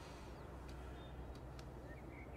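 Quiet background ambience: a low steady rumble with a few faint clicks.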